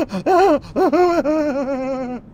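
A man's loud, high-pitched wordless vocalising: three short syllables that bend up and down, then one long held note.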